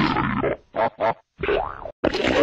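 Cartoon boing-like sound effect, stuttered and edited into short bursts with silent gaps between them, the last burst bending in pitch.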